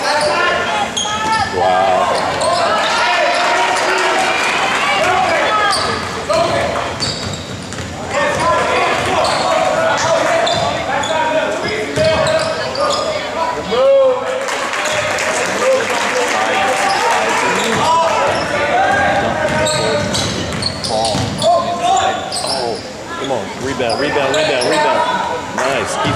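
Basketball game in a large gym: a ball bouncing on the hardwood court among many overlapping voices of players and spectators, with knocks scattered throughout.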